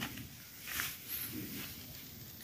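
Faint outdoor background noise with low wind rumble on the microphone.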